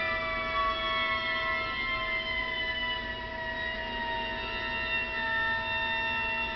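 Five violas bowing long sustained notes together: one holds a steady pitch while the other voices slide slowly downward in a drawn-out glissando.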